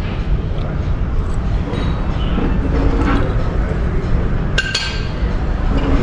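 Metal fork clinking against a ceramic plate, with one clear ringing clink about three-quarters of the way through, over a steady low background hum.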